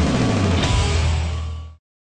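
Music sting for the AUX channel's logo ident: a loud, dense burst with deep bass that began just before and cuts off suddenly near the end.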